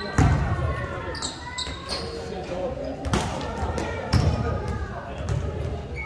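A basketball bouncing on a gym floor during a pickup game: several separate thuds, the loudest just after the start, with players' voices in a large indoor hall.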